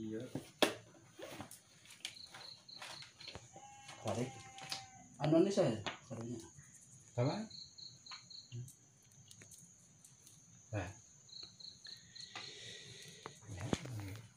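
Insects, probably crickets, chirring: a steady high trill throughout, with short bursts of quick chirps at a lower pitch three times. Low voices murmur briefly around the middle, and there are a few light knocks.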